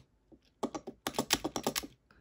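Fingers handling a small diecast toy car on a hard tabletop: a rapid run of light clicks and taps that starts about half a second in.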